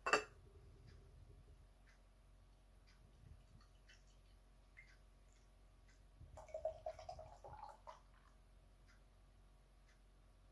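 Beer being poured from a can into a glass: a sharp click at the very start, then faint pouring with a louder stretch of splashing and fizzing between about six and eight seconds in.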